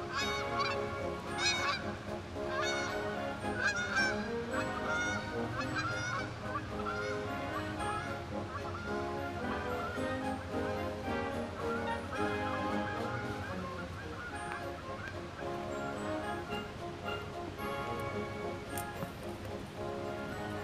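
Geese honking again and again, thickest in the first several seconds and thinning out later, over background music with steady held notes.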